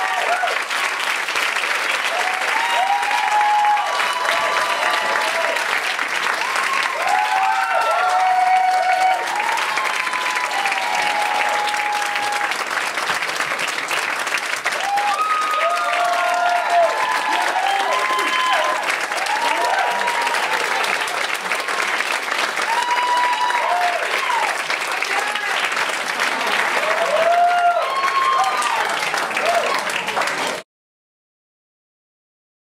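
Audience applauding steadily, dense continuous clapping with voices calling out and cheering over it.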